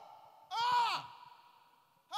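A man's short, high-pitched wailing cry of "ah" that rises and then falls in pitch, lasting about half a second, heard through a microphone.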